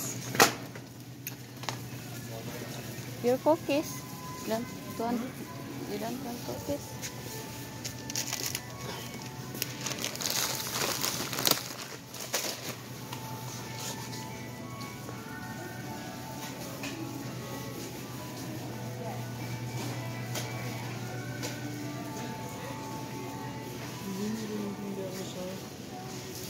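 Busy supermarket ambience: background music and indistinct voices over a steady low hum. A shopping cart rattles as it is pushed, loudest about ten to twelve seconds in.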